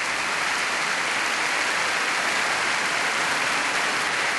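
Large concert audience applauding steadily.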